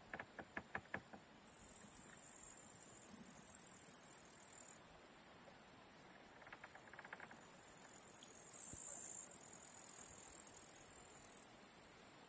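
Insects in the meadow grass singing a dense, high-pitched buzz that swells loud in two long spells and eases off between them. A short run of quick clicks is heard near the start and again about halfway through.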